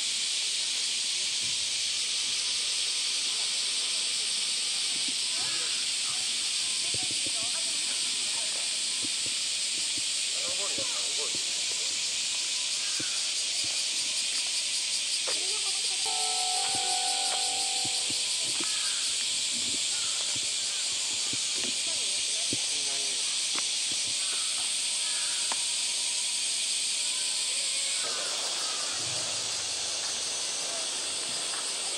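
Steady high-pitched hiss of a summer cicada chorus, the loudest sound, with faint voices of people in the background and a few short steady tones about halfway through.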